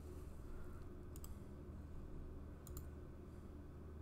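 Computer mouse clicks: two quick double clicks about a second and a half apart, over a low steady hum.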